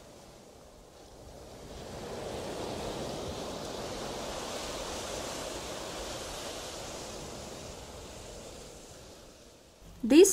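Seaside wind and surf: a soft rushing noise that swells over a couple of seconds, holds, then fades away near the end.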